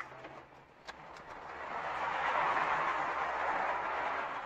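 A vehicle passing on the street: a rush of road noise that swells from about a second and a half in, peaks near the three-second mark and begins to fade at the end, with a faint click just before a second in.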